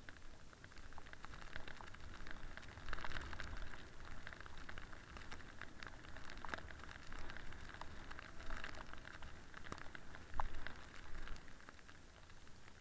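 Snowboard sliding and carving down a groomed piste, the board scraping over the snow in a steady crackly hiss full of small clicks, over a low rumble. The scraping swells about three seconds in and again near the end.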